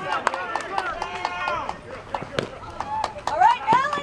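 Several voices of softball players and onlookers calling out and talking over one another on the field, too blurred to make out words, with a few sharp knocks in between.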